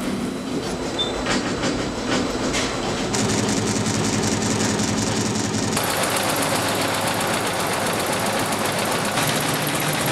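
Multi-head industrial embroidery machines stitching, a fast, steady mechanical clatter of needles. It gets louder about three seconds in and brighter about six seconds in.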